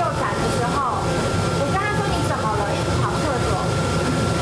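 Commercial kitchen exhaust hood fan running: a steady low rumble with a constant high whine, under conversation.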